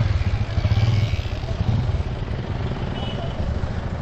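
Street traffic with a motorcycle engine running close by, loudest for the first second or so and then fading. Under it is a steady rough rumble of wind and road noise from riding a bicycle.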